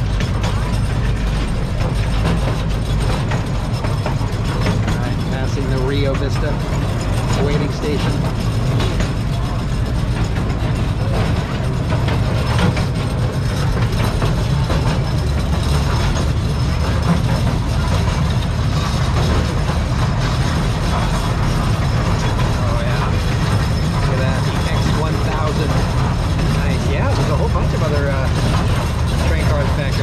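Small park train ride running along its track, heard from on board an open passenger car: a steady low rumble with the rattle of the cars and wheels on the rails.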